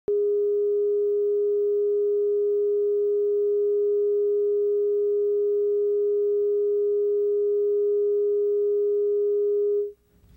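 Steady, loud, mid-pitched sound ident tone on a videotape leader, a single pure test tone that cuts off suddenly just before the end.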